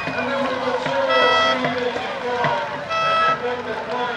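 Spectators shouting and cheering, with two short, steady horn blasts, one about a second in and one about three seconds in, the kind sounded as dragon boats cross the finish line.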